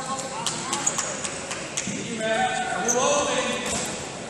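Indistinct voices calling out in a large, echoing hall, loudest a couple of seconds in, over scattered sharp knocks and a few short high squeaks from the wrestling mat area.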